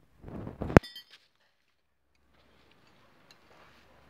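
Steel hand tools being handled: a short rustle, then one sharp metallic clink that rings briefly, about three-quarters of a second in, as a steel punch knocks against metal. Only faint scraping follows.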